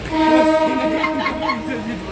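A local train's horn sounding one steady, loud note for nearly two seconds, heard from inside a compartment. Laughter is heard over it.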